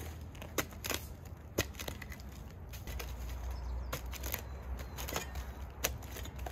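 A hand tool chipping and prying rotted heartwood out of the centre of a log: scattered sharp knocks and crackles at irregular intervals, over a low steady background hum.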